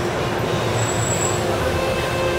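Keihan city bus passing close by, with a loud, steady rumble of engine and tyre noise.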